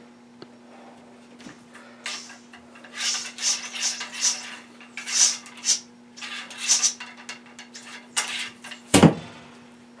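A solvent-wet cleaning patch on a ramrod scrubbed back and forth inside a muzzleloader's barrel: a run of short scraping strokes, about two a second. A single sharp knock comes near the end.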